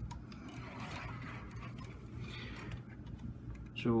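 Faint clicks and rubbing of a plastic Transformers combiner figure being handled and turned around, over a low steady hum.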